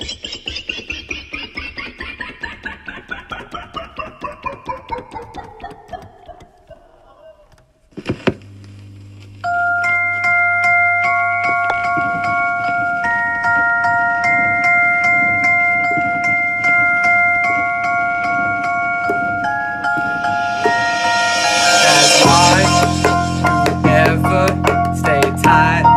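Electronic keyboard playing a fast descending run of notes, about five a second, that fades out. About eight seconds in, a hit starts a beat of held chords over bass, and the bass gets heavier near the end.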